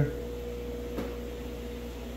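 Steady electrical hum of running aquarium equipment, a low drone with a thin high tone over it, and a faint click about a second in.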